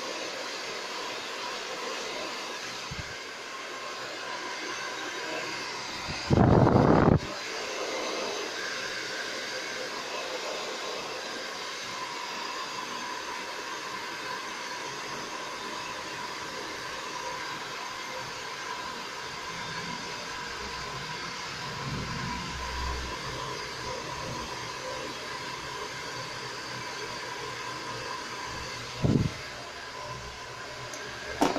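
Hand-held hair dryer running steadily, blowing air with a faint steady whine. About six seconds in, a sudden loud low sound lasts about a second, and there is a shorter one near the end.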